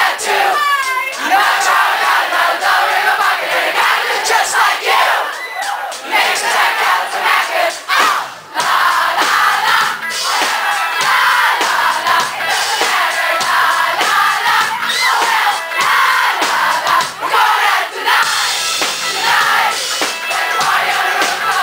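A live pop-rock band, with electric guitars, drums and a lead singer, playing while a large crowd sings and shouts along loudly, heard from within the audience.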